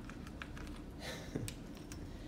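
African grey parrot's claws clicking on the metal bars of a clothes-drying rack as it shifts its grip: a few light, scattered taps.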